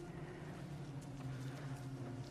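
Footsteps of people walking on a bare concrete floor, a few hard-soled steps over a steady low hum.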